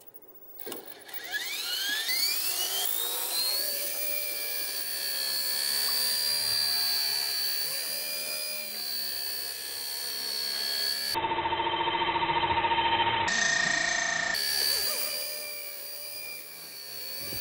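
Homemade RC helicopter's brushless main motor and rotor spooling up with a rising whine over a couple of seconds, then running at a steady high whine as it flies. For about three seconds near the end the sound turns duller, with lower steady tones, before the high whine returns.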